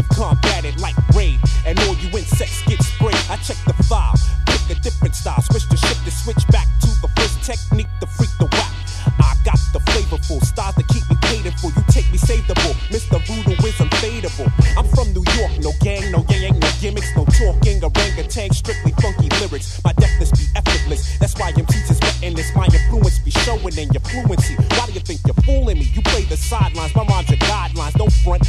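1990s boom-bap hip hop track: a rapper over a drum beat and a heavy, repeating bass line.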